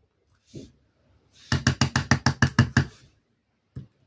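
Wooden-backed rubber stamp tapped rapidly against the ink pad or paper, a run of about a dozen quick knocks, roughly eight a second, lasting about a second and a half, followed by a single click near the end.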